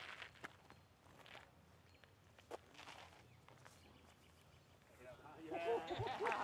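Quiet outdoor ambience with a few faint short knocks, then people's voices rising about five seconds in.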